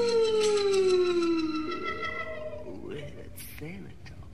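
A voice holds one long note that slides slowly down in pitch and fades out a little under two seconds in, followed by a few short wavering up-and-down pitch glides as the recording dies away.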